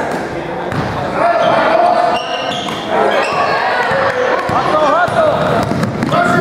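Basketball game in a gymnasium: a ball bouncing on the hardwood floor as it is dribbled, with players and spectators calling out over it, all echoing in the large hall.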